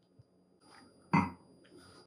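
Near silence, then about a second in one short throaty sound from a man who has just sipped a cocktail.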